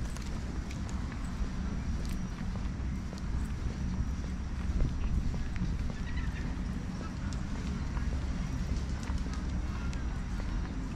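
Footsteps of a person walking on a paved path, under a steady low rumble of wind on the microphone.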